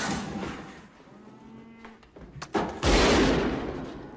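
Movie soundtrack of a tense scene: a sudden loud crash at the start, then a cow's low lowing call, then a loud rifle shot with a deep, slowly fading boom about three seconds in.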